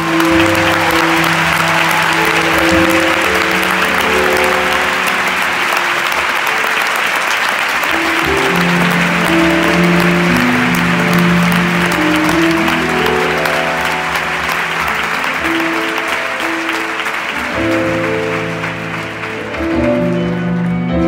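A concert audience applauding loudly and steadily, while the band holds sustained chords underneath.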